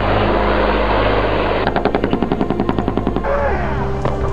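Automatic gunfire: after a rush of noise, a rapid, even burst of about a dozen shots a second lasts over a second, over a low steady drone.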